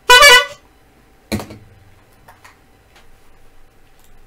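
A hand-squeezed bulb horn honks once, briefly. About a second later comes a single thump, followed by a few faint clicks.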